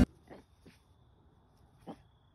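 Small puppies playing, giving three brief yips: two faint ones in the first second and a louder one near the end.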